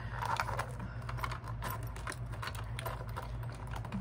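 A clear plastic bag crinkling and crackling as it is handled, with light, irregular clicks of long acrylic nails on the plastic.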